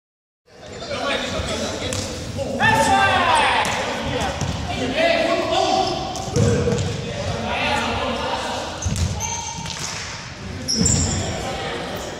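Several players calling and shouting to each other in a large, echoing sports hall, with a loud call about three seconds in, and a ball thudding on the floor a few times.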